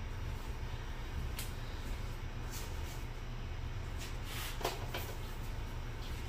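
Quiet room tone: a steady low hum, with a few faint, short clicks and a soft sound about three-quarters of the way through.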